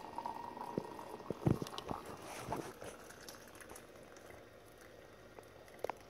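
Hot liquid jelly pouring through a wire-mesh strainer into a glass jar, with a few light knocks in the first couple of seconds and quieter trickling after that.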